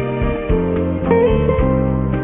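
Guitar music: plucked guitar notes over low bass notes, a new note or chord struck about every half second.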